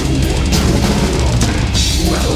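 Death metal band playing live, mixed with the drums to the fore: rapid bass drum strokes under distorted electric guitars, with cymbal crashes.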